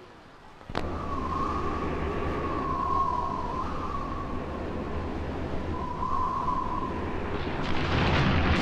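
Opening of a Bollywood film-song sequence: a sudden hit about a second in, then a sustained rumbling swell with a wavering high tone over it, growing louder and fuller near the end.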